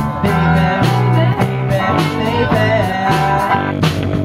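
Live amplified rock band playing: electric guitars and keyboard over a drum kit keeping a steady beat.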